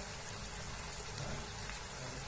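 Pea and potato vegetable curry simmering in a frying pan, bubbling steadily.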